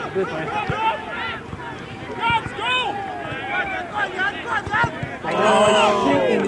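Voices of footballers and touchline spectators talking and calling out across an open pitch, with a loud, held shout near the end.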